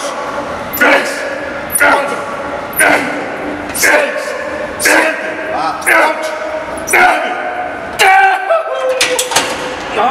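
A man shouting a rep count about once a second, each count a short loud call, in time with fast leg-press repetitions.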